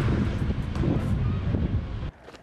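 Wind buffeting the microphone, a dense low rumble with no clear voice in it.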